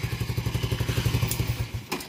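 Small air-cooled single-cylinder four-stroke motorcycle engine idling with an even, rapid firing beat on a used replacement spark plug, after the original plug was found sooty. It is switched off about a second and a half in, and the beat dies away, followed by a short click.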